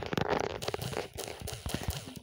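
Rapid, irregular clicking and crackling from a phone being handled and its touchscreen tapped as a title is typed on the on-screen keyboard.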